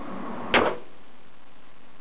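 A Ruger Police Six .357 Magnum revolver firing a single shot about half a second in, with a short echo in the indoor range.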